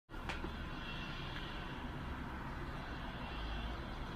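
Faint, steady background hum and hiss, with one light click just after the start.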